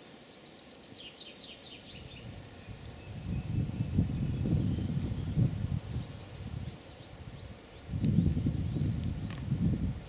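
A small bird gives a quick series of high, falling chirps in the first few seconds, with a few more high notes a little later. Two stretches of loud low rumble on the microphone, starting about three seconds in and again about eight seconds in, are the loudest sounds.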